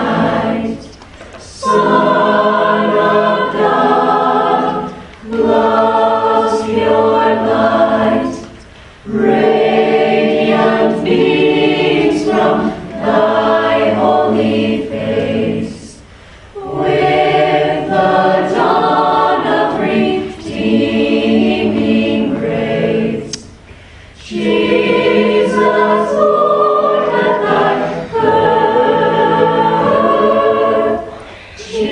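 A cappella vocal group singing in harmony with voices only, no instruments, in phrases of a few seconds each separated by short breaks.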